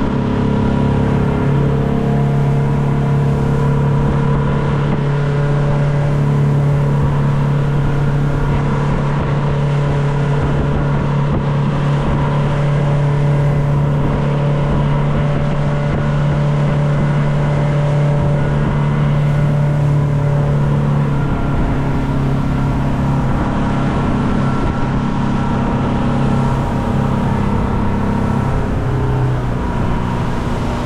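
Motorboat engine running steadily while under way, a loud even hum over the rush of wind and water, its note shifting slightly about two-thirds of the way through.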